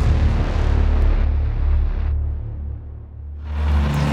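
Film-trailer sound design: a deep bass hit that carries on as a heavy low rumble under dark score, easing off past the middle and swelling again near the end.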